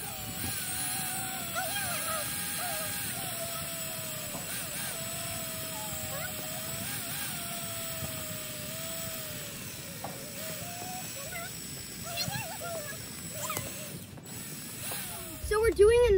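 Cordless drill boring a tap hole into a maple trunk, its motor whine wavering in pitch as the bit loads in the wood, easing off about ten seconds in.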